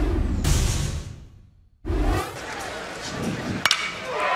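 Broadcast graphics transition sting: a swoosh over a deep boom that fades out, a brief gap of silence, then a second low thud. Ballpark crowd ambience follows, and near the end a metal bat cracks sharply against a pitched ball.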